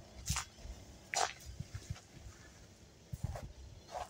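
A few soft footsteps and scuffs on brick paving, with three or four short knocks over a faint low rumble.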